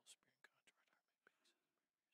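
Near silence, with a priest's faint whispered prayer and a few soft clicks.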